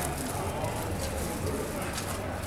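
A bird calling, with faint voices and low street rumble behind it.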